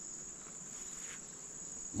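Crickets chirring at night: one steady, unbroken high-pitched trill, faint, with no other sound standing out.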